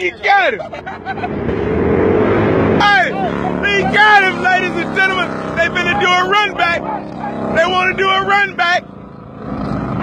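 A vehicle engine runs with its pitch rising over the first few seconds. Then several voices shout and talk over a steady lower engine rumble, dropping off a second before the end.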